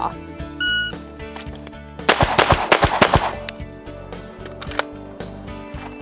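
A shot timer's start beep, one short high tone, then about a second later a quick string of pistol shots. Background music plays underneath.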